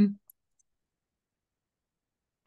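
A faint computer mouse click just after a spoken word ends, then near silence.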